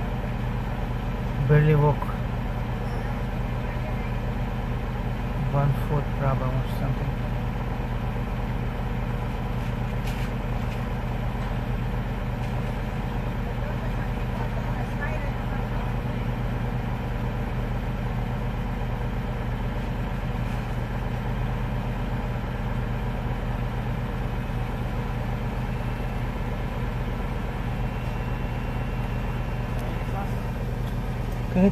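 Car engine idling steadily, heard from inside the stopped car's cabin as a low, even hum.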